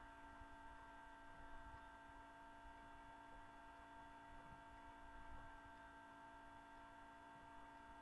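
Near silence: room tone with a faint, steady electrical hum.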